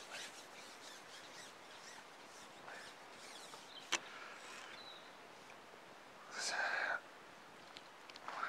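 Carbon fishing pole being unshipped, with one sharp click about four seconds in as the pole sections are pulled apart. A short noisy burst of about half a second follows near the end, over faint outdoor background.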